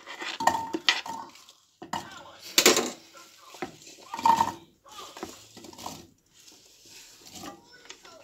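Chunks of raw apple being pushed off a wooden chopping board with a knife and tumbling into a saucepan: a run of irregular clatters and knocks, with the knife scraping across the board.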